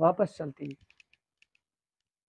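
A man's voice speaks for the first moment, then a few faint light clicks follow over the next second, and then it goes near silent.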